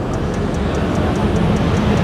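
A steady low mechanical rumble, like a vehicle or machinery running nearby.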